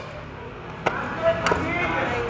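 Two sharp knocks a little over half a second apart, with faint voices between them.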